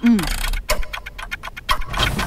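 Game-show countdown timer sound effect: a fast, even ticking, about five ticks a second, counting down the time left to answer.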